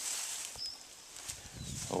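Rustle and crunch of footsteps on dry straw mulch and soil as a person walks between garden rows, loudest in the first half-second, with a faint short bird chirp partway through.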